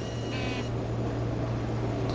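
Steady low background hum with an even hiss, and a brief faint high-pitched chirp about half a second in.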